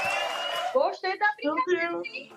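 Excited voices: a high held vocal cry over a noisy burst that stops abruptly under a second in, then quick, excited exclamations.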